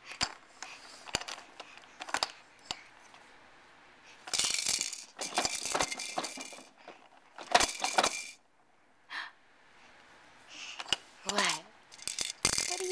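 Sharp clicks, then two loud bursts of rattling clatter from the plastic toys of a baby's Exersaucer activity saucer being handled. Near the end there is a short falling baby vocalisation.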